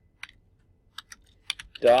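Typing on a computer keyboard: about half a dozen separate key clicks at an uneven, unhurried pace.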